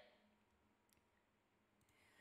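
Near silence with a couple of faint computer mouse clicks, one about a second in and another near the end.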